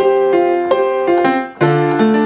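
Software piano patch played from an Akai MPK61 MIDI keyboard: a quick series of chords with no sustain pedal, so each chord stops short when the keys are released, with a brief gap near the end before the next chord.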